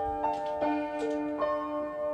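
Upright acoustic piano being played with no singing: a slow line of single notes struck about every half second over held lower notes.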